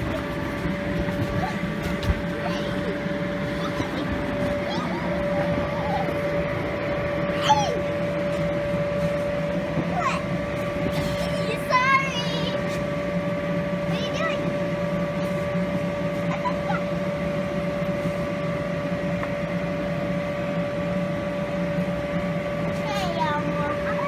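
Electric inflation blower of a bounce house running with a steady, even hum. A young child's short, high vocal sounds come in a few times over it.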